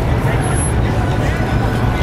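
City street ambience: people talking over a steady low hum of traffic.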